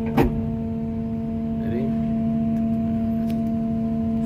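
Engine and hydraulic system of a Caterpillar material handler, heard from inside its cab: a steady hum while the elevating cab is raised. A single sharp click comes just after the start.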